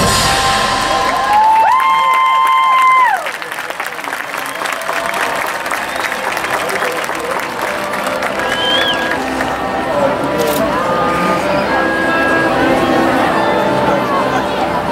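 A marching band holds a loud brass chord that swells and then cuts off sharply about three seconds in. Crowd cheering and applause follow, with scattered whoops and whistles.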